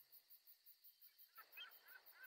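Near silence, with a few faint, short, high chirps in the second half.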